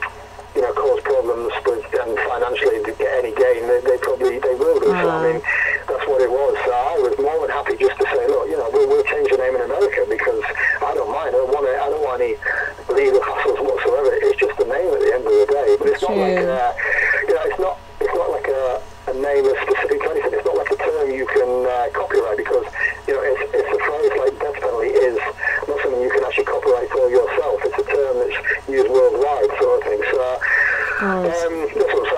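Continuous speech: a person talking through a thin, narrow-band, telephone-like line.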